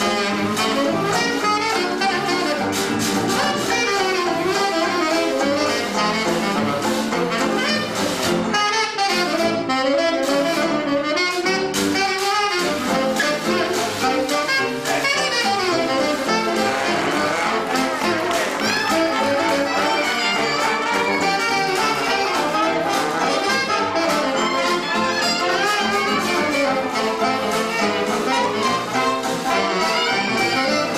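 Traditional 1920s-style jazz band playing live, a tenor saxophone soloing over the band, with a trumpet up front near the end.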